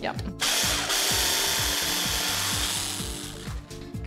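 Stick blender with a mini chopper attachment whizzing ground hazelnuts, sugar, rice flour and egg white into a cookie dough. It starts about half a second in, runs steadily for about three seconds and stops shortly before the end.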